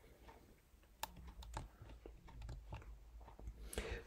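Near silence: room tone with a few faint, scattered clicks, the first about a second in and more through the rest.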